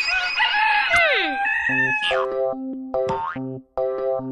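A rooster crowing as a cartoon morning wake-up sound effect for about the first second and a half. It is followed by background music of short repeated notes.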